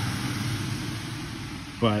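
Steady hiss of heavy rain falling, growing slightly fainter toward the end.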